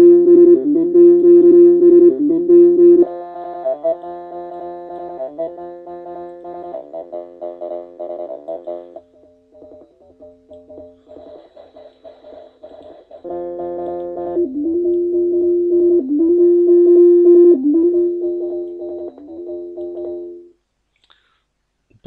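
d-lusion Rubberduck software bass synthesizer playing a looping sequenced bass pattern, with notes sliding in pitch, while its waveform is switched. The tone and level change about three seconds in and again about nine seconds in, when it thins out. It comes back loud about thirteen seconds in and stops about a second and a half before the end.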